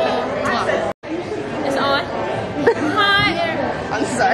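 Several people chattering indoors, with voices overlapping and none clearly in front. The sound drops out for an instant about a second in, at an edit cut.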